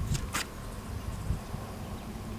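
Quiet outdoor background with a low rumble and two short clicks shortly after the start.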